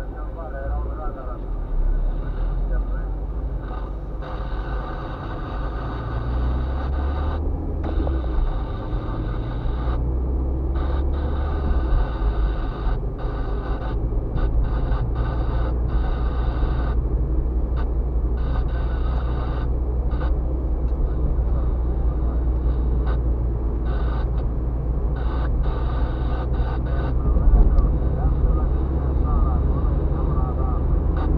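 Inside a moving car: a steady low engine and road rumble that grows a little louder after the first few seconds, with indistinct voices over it.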